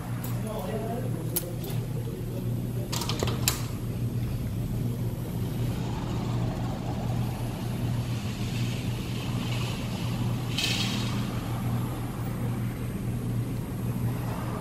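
A steady low hum with indistinct voices, broken by a few sharp clicks and knocks in the first few seconds and a short rustling burst later on.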